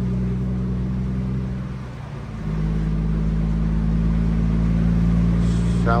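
Heavy truck's diesel engine droning steadily, heard inside the cab while driving. About two seconds in it dips briefly and comes back at a slightly different pitch.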